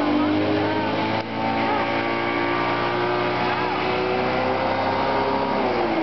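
Motorboat engine running at a steady pitch under way, the note dipping slightly near the end.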